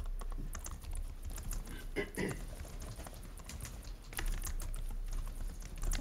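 Typing on a computer keyboard: irregular key clicks, over a steady low electrical hum.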